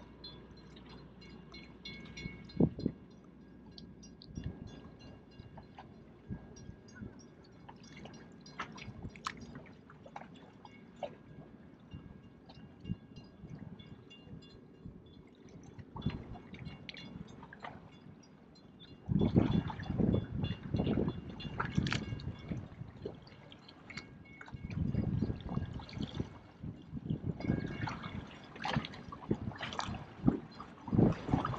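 Water lapping and sloshing against shoreline rocks, with scattered faint ticks. It grows louder and surges irregularly in the last third.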